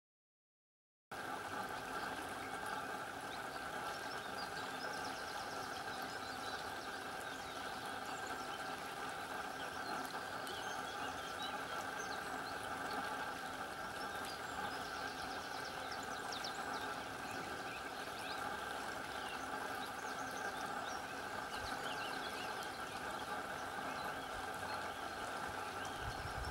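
Steady rush of a stream's flowing water, starting about a second in.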